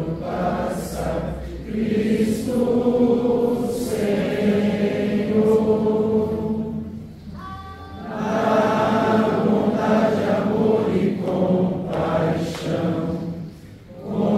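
A congregation singing a hymn together in long held notes, with a short break between lines about seven seconds in and another near the end.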